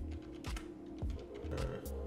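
Computer keyboard keystrokes, a few separate sharp clicks about every half second, over steady background music.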